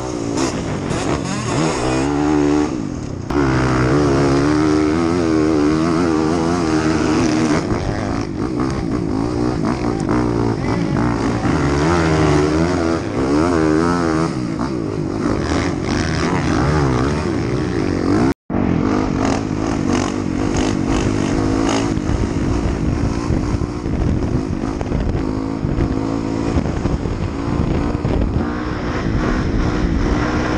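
Honda dirt bike engine heard close up from on board, revving up and falling back again and again as the rider shifts through the gears. About eighteen seconds in, the sound cuts out for a moment. After that the engine runs at a steadier pitch.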